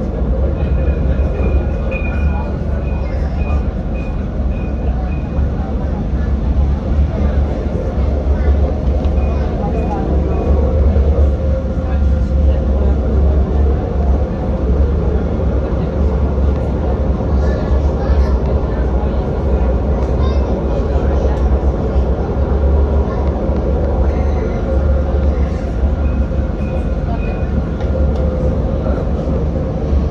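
Alstom Citadis tram running on its rails, heard from inside the car: a loud, steady low rumble with a faint motor hum over it.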